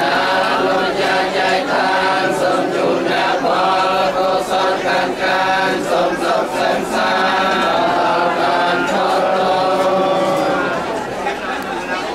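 A group of Theravada Buddhist monks chanting together in unison, a blessing over the meal offerings recited in long held phrases with short breaks between them, growing quieter near the end.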